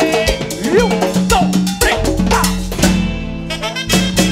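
Live cumbia band playing: electric bass line, drum kit and hand percussion keeping a steady dance beat. Near the end the percussion drops out briefly over a held low note before the full band comes back in.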